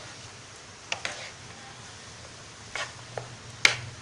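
Spatula tapping and scraping against a frying pan while stirring potato-and-pea stuffing: a few separate sharp knocks, the loudest shortly before the end.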